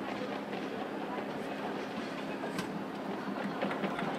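Stadium ambience: a steady murmur of distant crowd chatter from the stands over a faint constant hum, with a few scattered light clicks.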